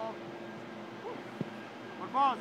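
A football kicked once, a single short thud about two-thirds of the way through, over a steady low hum and players' brief calls.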